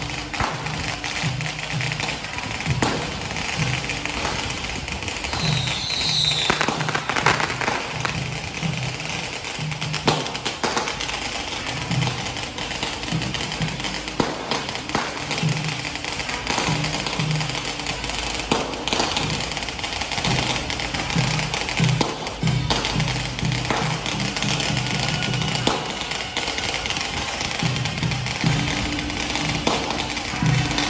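Taiwanese path-clearing drum (kai lu gu) troupe playing: a big drum beating in an uneven, driving rhythm under a continuous clash of cymbals and gongs, with occasional sharp cracks.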